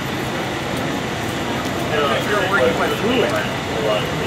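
Steady drone of vehicle engines running, with people talking in the background from about halfway through.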